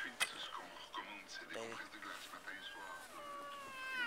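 Indistinct voices with a sharp click just after the start. In the last second and a half a long, high-pitched, drawn-out vocal sound slowly falls in pitch.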